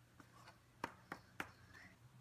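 Three light, sharp taps in quick succession, about a quarter second apart, from the cardstock being tapped to knock off loose embossing powder, with faint rustling of the paper.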